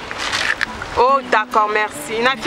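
Speech: a voice talking, starting about halfway through, after a brief hiss of noise.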